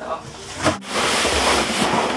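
Cardboard packing and plastic being rustled and scraped as a boxed putting mat is unpacked and lifted out, a loud continuous rustle with one short knock well under a second in.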